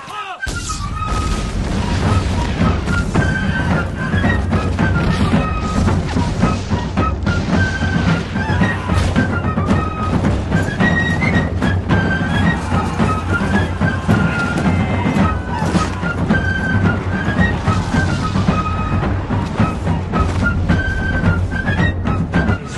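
Battle-scene film soundtrack: music with a high melody of short stepping notes over a loud, dense low rumble with booms.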